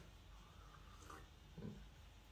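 Near silence while tea is sipped from a mug, with a faint short low sound near the end.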